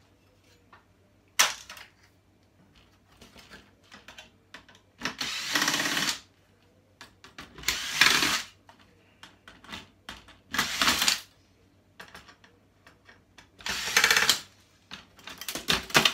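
Cordless drill-driver backing screws out of a TV's sheet-metal chassis in four short runs of about a second each, with a sharp knock about a second in and small clicks between.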